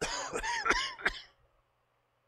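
A man coughing: a quick run of about four harsh coughs in just over a second, then it stops.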